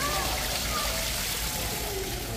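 Small artificial waterfall trickling and splashing steadily over mossy rocks into a shallow pool, with people talking faintly in the background.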